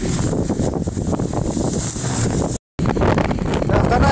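Wind buffeting the microphone in a steady low rumbling rush, dropping out for a moment at an edit about two and a half seconds in.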